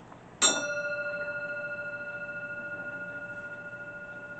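A bell struck once about half a second in, then ringing on with a long, slowly fading tone that wavers slightly. It is the consecration bell rung at the elevation of the chalice.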